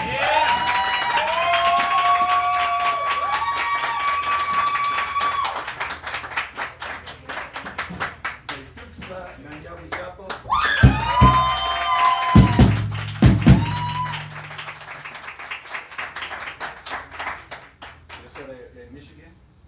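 Live jazz band: tenor saxophone playing long held notes with bends over drum kit and electric bass, closing on a held final note with a deep bass note about eleven to fourteen seconds in. This is followed by fading clatter and clapping.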